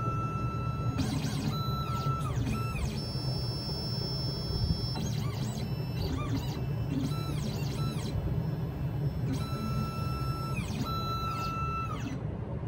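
The stepper motors of an Xhorse Dolphin XP-005L automatic key cutting machine whine as the carriage and probe travel during automatic clamp deviation detection, a calibration stage. It makes several moves, each whine rising in pitch, holding steady and falling away, with a pause of about two seconds past the middle.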